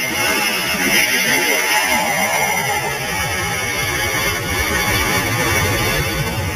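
Launch of a THAAD interceptor missile: its solid-fuel rocket motor fires from the truck-mounted launcher with a sudden loud roar that holds steady as the missile climbs away.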